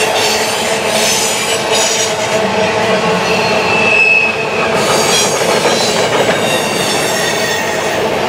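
Freight train covered hopper cars rolling past on a curve: a continuous loud rush of steel wheels on rail, with steady high-pitched wheel squeal from the flanges rubbing through the curve. A brief sharper, higher squeal comes about four seconds in.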